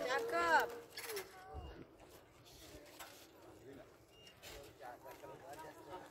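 A drawn-out voice call that ends under a second in, then only faint, distant voices.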